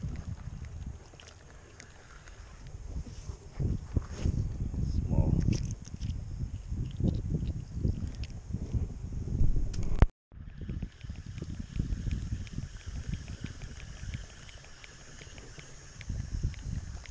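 Rustling and knocking handling noise on the camera's microphone as a small croaker is held and handled close to it, heaviest in the middle. The sound cuts out completely for a moment just after ten seconds in, then quieter rustling resumes.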